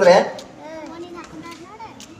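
A man's speech breaks off just after the start, then faint children's voices chatter in the background.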